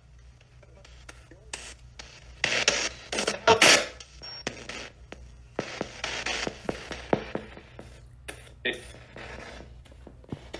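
P-SB7 spirit box sweeping FM frequencies at a 250 ms sweep rate, played through a small ZT amplifier: choppy bursts of radio static and clipped fragments of broadcast sound that change every fraction of a second. The loudest bursts come between about two and a half and four seconds in. The operator reads fragments as the words "hello?" and "we'll help her".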